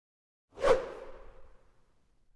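A single whoosh transition sound effect for an animated title card. It comes in sharply about half a second in and fades away over about a second, leaving a faint ringing tone as it dies.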